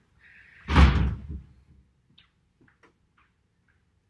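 A short squeak, then a single heavy thump about a second in, followed by a few faint clicks.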